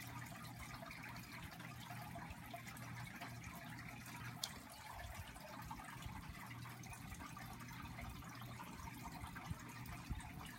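Faint steady hiss with a low hum, with one short click about four and a half seconds in.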